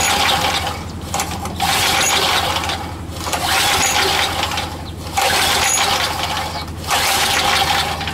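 Craftsman Eager 1 edger's Tecumseh engine being cranked by its recoil pull starter, about five pulls in a row, each a whirring rattle, without the engine catching. It is cranked at full throttle with the choke wide open, which the owner tries because it might be flooded.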